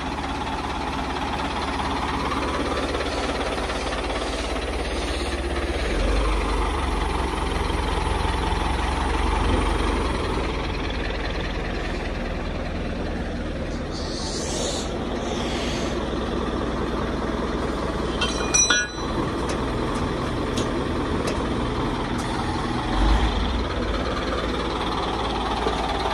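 Caterpillar 950C wheel loader's diesel engine running steadily, swelling in the low end for a few seconds. Two brief hisses come around the middle and a sharp clatter near the end.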